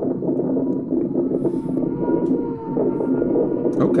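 Kawasaki H2R's supercharged inline-four heard from a distance as the bike approaches at speed: a steady engine tone that holds its pitch with small wavers.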